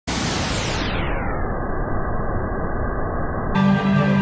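Steady rush of a waterfall, which grows muffled over the first second and a half as if a filter closes down on it. Music with sustained tones starts about three and a half seconds in.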